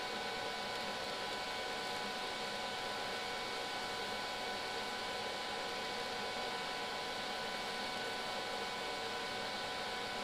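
TIG welding on a cracked cast-iron turbo exhaust housing: a steady hiss with a few faint steady tones, holding even with no starts or stops.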